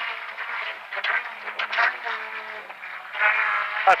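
Rally car's engine heard from inside the cabin during a stage run, sounding muffled, its pitch rising and falling as the driver works the throttle between corners, with a few short clicks.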